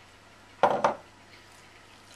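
Crockery knocking together: two quick clatters just over half a second in, as a small bowl is tipped and knocked against a mixing bowl to empty sultanas into it.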